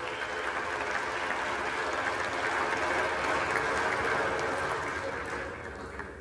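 Applause from members of the House, swelling to its loudest mid-way and tapering off near the end, with some voices mixed in.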